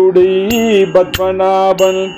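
Tamil devotional song in Carnatic style: a held melodic line that wavers in pitch, over a steady drone. Small hand cymbals strike about every two-thirds of a second.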